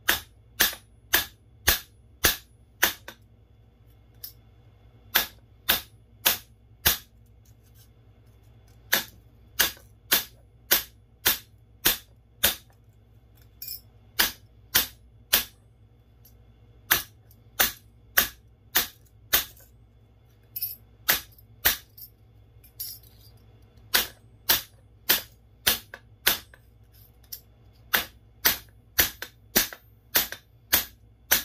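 Steel hammer striking a sterling silver spoon on a flat steel plate, flattening it: sharp metallic blows about two a second, in runs broken by short pauses.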